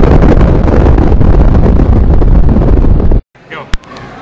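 Loud, distorted explosion rumble, a sound effect laid over nuclear mushroom-cloud footage, which cuts off abruptly a little after three seconds. Faint indoor background and a single sharp click follow.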